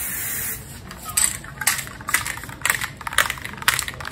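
Aerosol spray can of primer gray spraying with a steady hiss that cuts off about half a second in. Then the can is shaken, its mixing ball rattling about twice a second.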